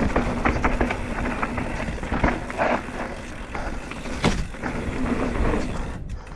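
Downhill mountain bike running fast over a dry dirt trail: tyre noise and a continuous rumble with frequent rattles and knocks from the bike over roots and bumps, one sharper knock about four seconds in.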